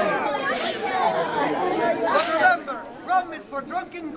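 Many voices talking and calling out over one another at once, with no single clear speaker. After about two and a half seconds the babble thins to a few separate short calls.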